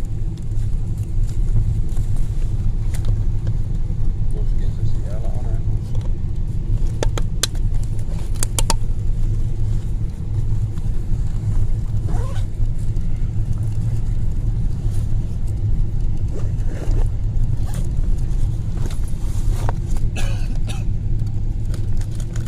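Steady low rumble of an airliner cabin on final approach, the engines and airflow heard from inside. A few sharp clicks sound about seven to nine seconds in.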